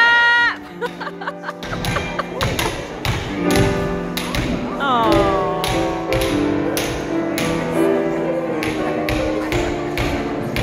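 Hammers striking a slab of solid chocolate, a quick irregular run of sharp taps and knocks, over live instrumental music with long held notes. A shouted voice right at the start.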